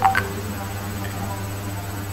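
A steady low hum, with a brief click and a short tonal blip right at the start.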